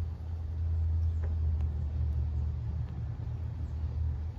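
Flames burning on a diecast toy pickup truck: a steady low rumble with a few faint crackles.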